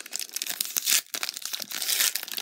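Foil wrapper of a Panini NBA Hoops trading card pack crinkling and crackling as it is pulled open by hand, loudest just before a second in.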